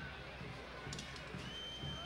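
Faint stadium ambience from a football match broadcast: a low murmur of distant voices on the field and in the stands. A thin, steady high tone comes in near the end.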